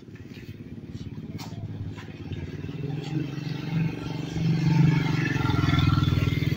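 A motor vehicle's engine running close by, a fast, even pulsing that grows louder over the first few seconds and then holds steady.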